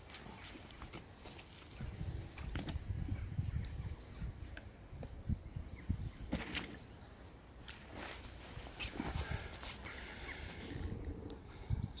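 Footsteps and scattered knocks on a stony shoreline as a remote-control bait boat is carried down and lowered into the water, over a low rumble.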